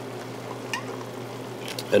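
Clams, cherry tomatoes and white wine sizzling steadily in a hot stainless steel pan as a glug of olive oil is poured in.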